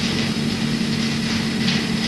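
Steady hiss and low hum from a low-quality amateur 1970s recording during a pause in speech.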